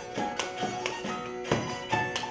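Folk dance music with sustained string-like tones, cut through by the dancers' boots stamping and slapping on a wooden parquet floor in an irregular rhythm; the loudest stamp comes about one and a half seconds in.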